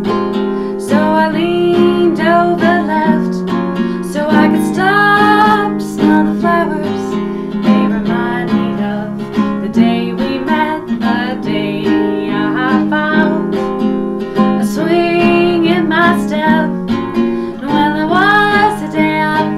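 A woman singing over a strummed acoustic guitar, the guitar chords sounding throughout under her voice.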